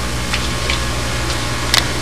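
Quiet background: a steady low electrical hum with faint hiss, and a few light ticks, the sharpest near the end.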